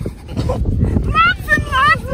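Shovel digging into packed beach sand, with dull thuds and scrapes. From about a second in, a high, wavering whine rises and falls over them.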